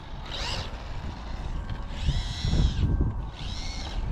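Tamiya M05 RC car's brushed electric motor and gears whining in three short throttle bursts, each rising and falling in pitch, with a low rumble under the middle one. The driver suspects something in the drivetrain is slipping.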